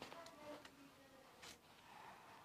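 Near silence: faint rustle of a georgette dress being lifted and handled, with one light tick about one and a half seconds in.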